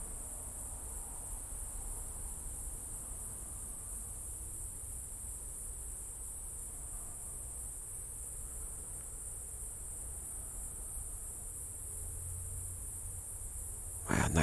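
A cicada buzzing: one steady, high-pitched drone that holds even and unbroken throughout.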